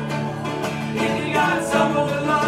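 Live acoustic band playing: strummed acoustic guitars in a country style, with no lead vocal line.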